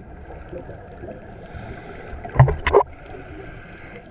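Muffled underwater background noise picked up by a camera in its waterproof housing, with a short burst of gurgling rumble about two and a half seconds in.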